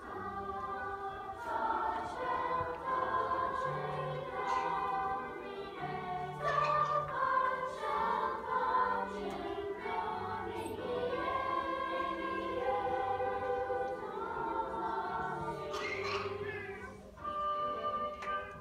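Choral music: several voices singing held notes together.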